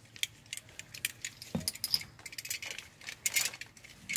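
Metal buckle and steel anchor plate of a new two-point seat belt clinking and rattling as the belt is handled: a run of light, irregular clicks, busiest near the end.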